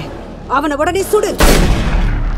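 A voice speaks a short line, then a single loud rifle shot about one and a half seconds in, its low rumble carrying on.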